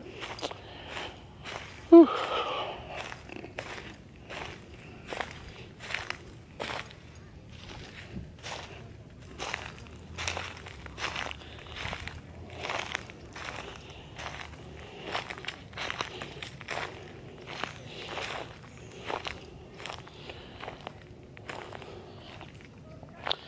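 Footsteps on dry fallen leaves and grass at a steady walking pace, about two steps a second.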